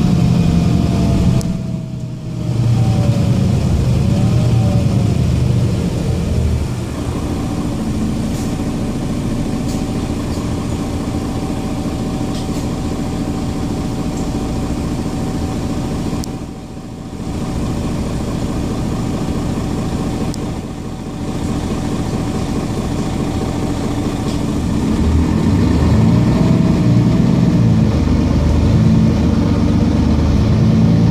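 Mercedes-Benz Citaro G articulated bus heard from inside while driving: the diesel engine runs steadily with a whine above it that glides up and down, then holds steady for a long stretch. The level dips briefly three times, and the engine grows louder near the end.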